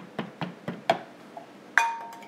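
A few light knocks of a plastic food-processor pusher tamping graham cracker crumb crusts down in small metal cheesecake pans. Near the end comes a sharp clink with a short ringing tone as it is set down in a glass mixing bowl.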